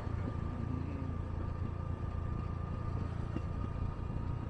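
A moving vehicle's interior, with a steady low engine and road rumble and a faint, steady high whine over it.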